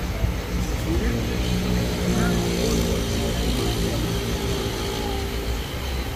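Steady low rumble of road traffic, with a vehicle engine passing and voices talking in the background.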